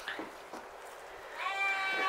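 A Romanov sheep bleating: a single high, steady call that starts near the end.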